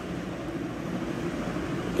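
Steady low background noise with no distinct events, sitting in the low pitches.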